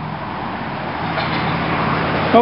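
A motor vehicle engine running, a steady low hum that grows slightly louder about a second in.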